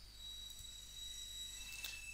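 Faint room tone: a steady low electrical hum with a thin, high-pitched whine, and a short soft hiss near the end.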